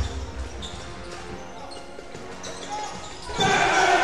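Basketball dribbled on a hardwood court amid general arena game noise and faint voices, with a loud burst of voices near the end.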